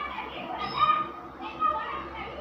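Children's voices: two short, high-pitched calls, about half a second in and again near the end.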